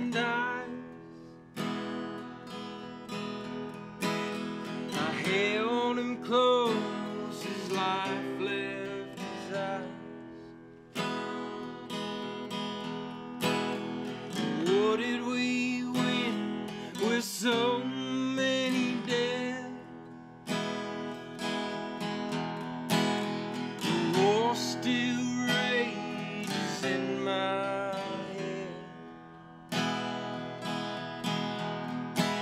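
Gibson Hummingbird acoustic guitar strummed in a country song, with a man's voice singing long, bending lines over it.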